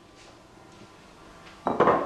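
Small ceramic bowls clattering on a kitchen counter: a short clatter of a few quick knocks near the end, as a bowl is set down among the others.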